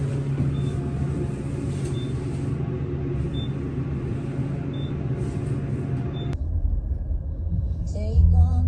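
Steady hum inside a moving elevator, with a short high beep about every second and a half. After a cut about six seconds in, it gives way to the deeper low rumble of a car cabin on the road.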